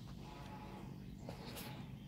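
A cat purring steadily in a low rumble while grooming another cat, with a brief rasp of tongue licking fur about one and a half seconds in.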